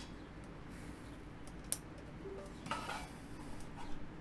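Faint handling taps and one sharp click a little under two seconds in: the power switch under the head of a Bixolon BCD-2000 customer pole display being flipped on as the plastic unit is handled.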